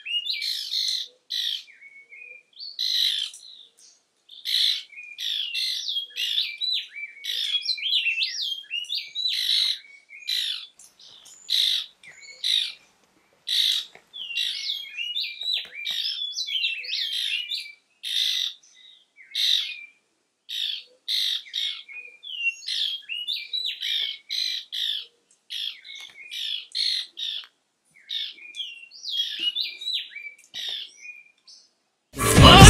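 Birds chattering and singing: quick, overlapping runs of high, gliding notes and squawks, broken by short pauses.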